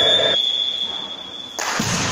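Referee's whistle, one long steady blast that cuts off about one and a half seconds in, followed by a rush of general noise from the hall.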